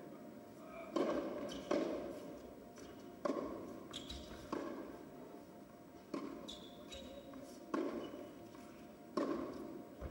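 Tennis ball struck by rackets and bouncing on a hard court during a baseline warm-up rally: a series of sharp impacts, some under a second apart and others a second or more, each echoing in a large indoor hall.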